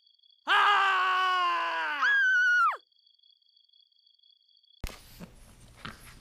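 A cat's loud, drawn-out yowl, sliding slightly down in pitch, breaking into a much higher shriek that drops away at its end, the sound of a cat confrontation. Near the end, faint knocks and tapping.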